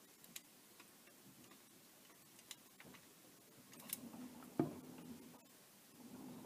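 Faint scattered clicks and light ticks from handling a sheet of aluminium foil and a plastic cup, with a sharper click about four and a half seconds in.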